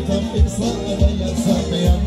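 A live band playing a Macedonian folk dance tune, a melody over a steady low drum beat of about two strokes a second.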